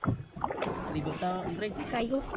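People chattering aboard a small inflatable boat as it is paddled across the water, with a sharp knock right at the start.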